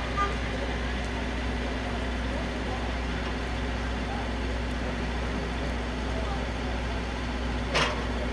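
A heavy vehicle's engine running steadily with a low, even hum.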